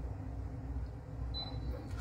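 Quiet room tone: a low steady hum with a faint short high tone partway through.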